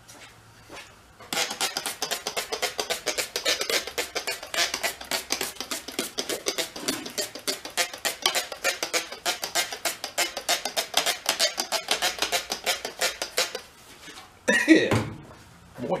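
A rag rubbing on the moped's steel frame in rapid, even strokes. The strokes start about a second in and stop suddenly about two seconds before the end.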